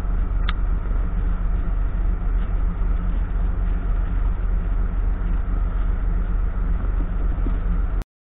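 A tanker ship underway at sea: a steady low engine drone with a constant hum. There is a brief faint high blip about half a second in.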